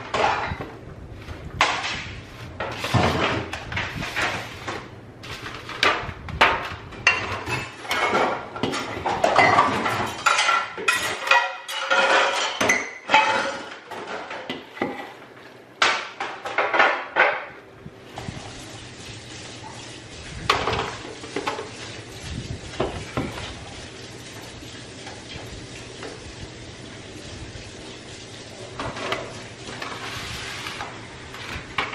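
A measuring cup scooping and scraping a noodle mixture out of a large stainless-steel mixing bowl, with clattering knocks as portions are tipped into aluminium foil pans. The clatter is dense for the first half, then thins to a few scattered knocks.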